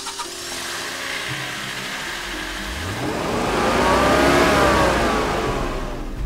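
Car engine revving over a steady rushing noise: the engine note climbs to a peak a little past the middle, then eases back down.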